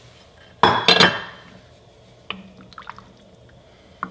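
Chicken cooking juice poured from a bowl into a pot of gumbo liquid: a brief, loud splashing pour starting about half a second in and lasting under a second, followed by a few light clinks.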